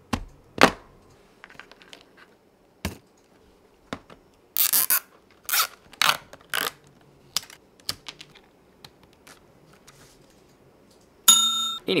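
Black nylon cable ties pulled tight around a compact camera: several short rasping zips in the middle, with clicks and knocks from handling the camera on a wooden desk. A short buzzing sound comes near the end.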